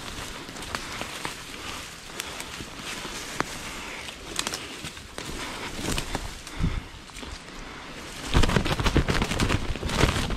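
Dry leaf litter crunching and rustling with scattered sharp clicks, then a loud flurry of crashing and crackling in the leaves near the end.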